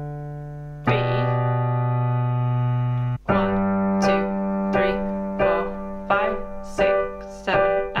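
Piano chords with a bass note in the left hand: one chord held for about two seconds, then, from about three seconds in, a chord struck again and again at a steady beat, roughly once every 0.7 seconds.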